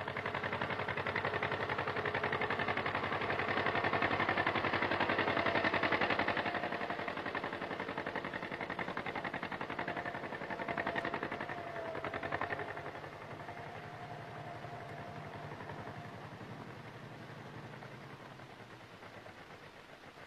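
John Deere Model B tractor's two-cylinder gasoline engine running under load with a rapid popping beat while pulling a plow. Louder for the first six seconds or so, then settling to a lower, steadier level from about thirteen seconds in.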